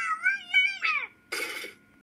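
A cartoon girl's high-pitched wordless vocalizing that glides up and down and ends in a falling squeal about a second in. A short burst of noise follows.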